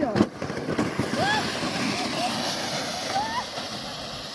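A plastic steering sled pushing off and sliding over snow: a steady scraping hiss that slowly fades as it moves away. Short voice sounds break in over it a few times.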